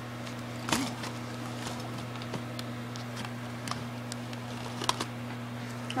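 A steady low hum with a faint steady tone above it, broken by a few short clicks and rustles of handling, the clearest about a second in and near the end.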